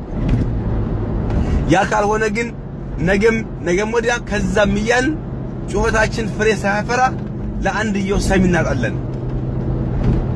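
A person talking in several phrases over the steady low hum of a car driving.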